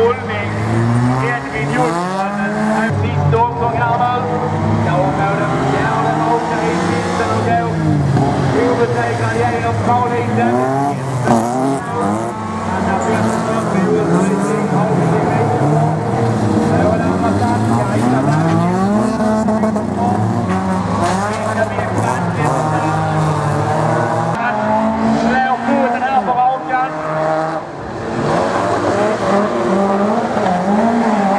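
Several folkrace cars racing on a dirt track, their engines revving up and falling back over and over, the pitches of different cars overlapping.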